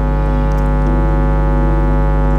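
Sustained electronic keyboard chord held steadily, with one note changing about a second in, over a low electrical hum.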